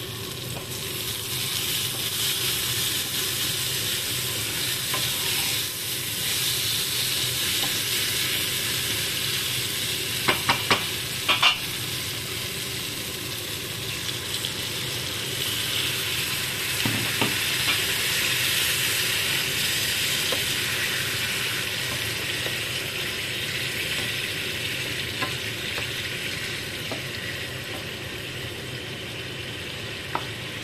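Egg curry gravy sizzling steadily in a frying pan on a gas stove, with a quick run of sharp clicks about ten seconds in.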